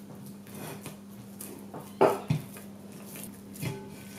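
Hands rubbing oil over a ball of yeast dough and turning it in a glazed ceramic plate. The dough and plate make soft handling noises, with a sharp knock of the plate about two seconds in and a softer one just after.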